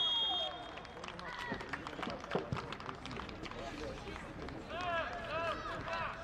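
Pitch-side sound of a football match on artificial turf. A steady whistle tone ends just as it begins, followed by scattered knocks and scuffs of running feet, with one sharp knock in the middle. Near the end a high voice calls out repeatedly.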